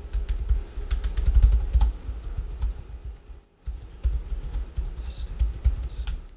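Typing on a computer keyboard: a quick, uneven run of key clicks over low thuds, with a brief pause about three and a half seconds in.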